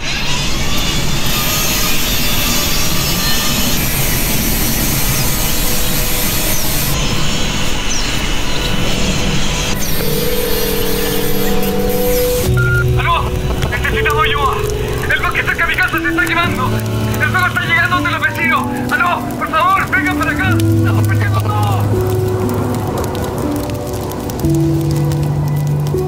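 Advert soundtrack: for about the first twelve seconds a loud, hissing grinding noise, an angle grinder cutting a metal bar, under music. Then slow held music notes that change every second or so, with a voice speaking over them.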